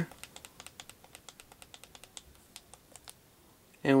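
Quick, light clicks of the HP TouchPad's hardware buttons pressed over and over, about four or five a second, to scroll down a recovery menu's file list. The clicking stops about three seconds in.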